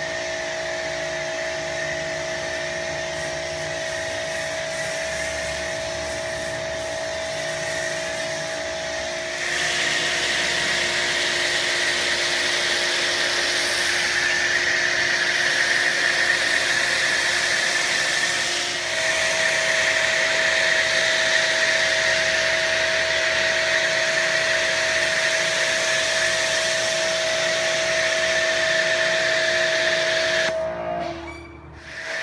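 Greenworks electric pressure washer running with a steady whine while its foam lance sprays a hissing jet of foam onto a car's body. The spray gets louder about nine seconds in.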